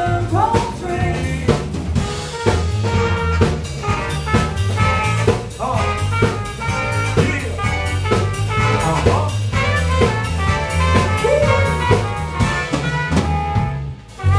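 Live jazz–hip-hop band playing: a drum kit keeps a steady beat with rimshots over a bass line, with trumpet and other instruments playing on top.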